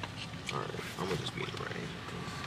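Faint human voices, low murmurs and sounds without clear words, with soft background noise.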